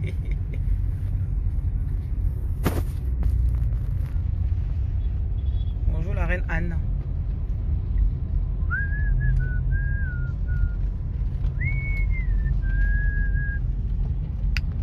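Steady low road and engine rumble heard from inside a moving car. From about nine seconds in, a person whistles a few held notes of a tune, stepping up and down in pitch.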